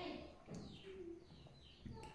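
Faint background bird calls: a few short chirps that fall in pitch, heard during a pause in speech.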